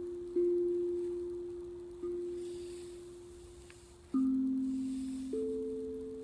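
Hapi steel tongue drum tuned to A Akebono, played with mallets: four single notes, each left to ring and fade. The first two share a pitch, the third is lower and the fourth higher.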